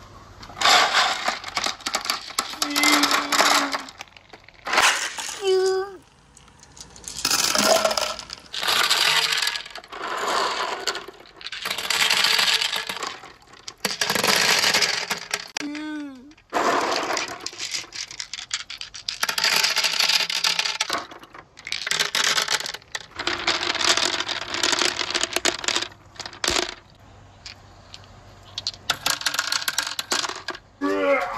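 Marbles rolling and clattering along a handmade wooden marble run, in a series of runs about a second or two long with short pauses between. A few sliding ringing tones come through, the clearest about halfway in.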